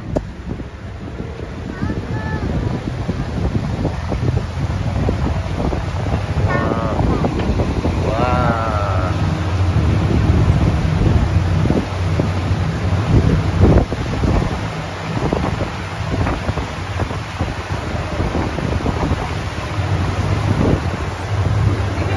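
Tour boat underway: a steady low engine hum under wind buffeting the microphone and rushing water, growing louder about two seconds in as the boat picks up speed.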